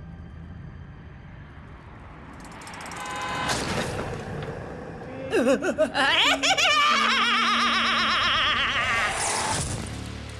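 A woman laughing loudly in a long, wavering cackle that starts about five seconds in and runs for about four seconds. Before it comes a low rumble that swells into a brief whoosh about three and a half seconds in.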